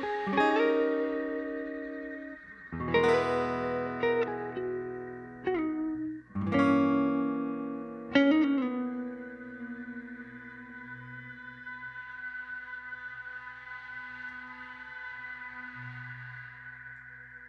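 Instrumental live music: a guitar through effects pedals plays about six ringing chords that each decay, then settles about nine seconds in into a held, wavering ambient drone.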